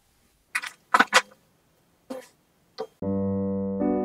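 A few short clicks, then piano music with sustained chords begins about three seconds in.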